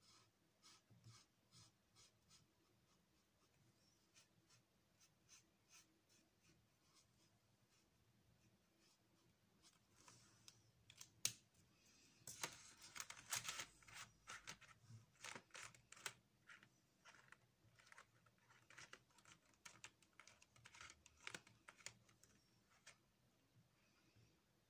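Quiet felt-tip marker strokes scratching on paper, with faint scattered ticks. About ten seconds in comes a louder stretch of rustling and sharp clicks lasting several seconds, then scattered clicks again.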